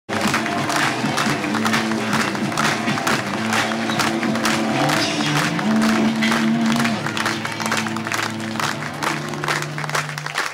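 Music playing loudly while a crowd claps along in a steady rhythm.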